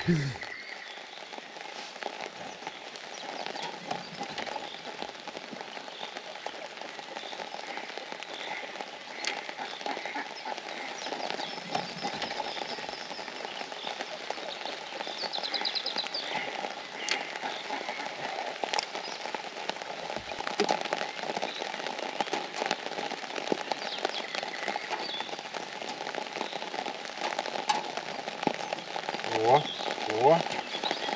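Steady rain falling on a pond, a dense patter of drops hitting the water.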